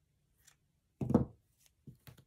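A few faint snips of scissors cutting through tulle, then a dull knock about a second in as the scissors are set down on the padded tabletop, followed by a lighter knock near the end.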